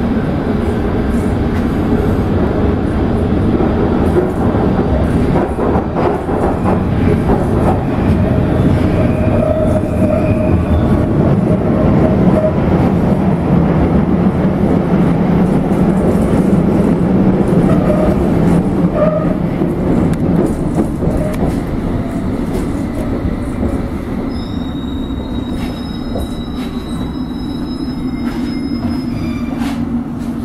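Inside a London Underground S Stock carriage running through a tunnel: a loud, steady rumble of wheels on rail, with faint wheel squeal in the middle. It eases off in the last third as the train slows into a station, and a thin high whine sounds near the end.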